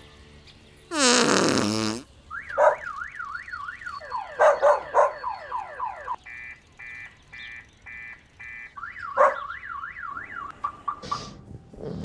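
A loud falling swoop of sound, then a car alarm cycling through its patterns: a fast up-and-down warble, a run of five evenly spaced beeps, then the warble again.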